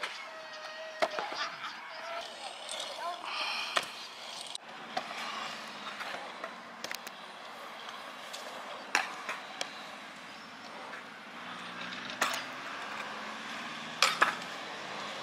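Stunt scooter wheels rolling on concrete skate-park ramps, with several sharp clacks spaced a few seconds apart as the scooter lands or its deck strikes the concrete.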